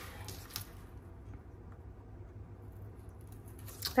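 Faint rustles and a few light clicks of cardstock being folded and creased by hand, mostly in the first second or so, over a faint low hum.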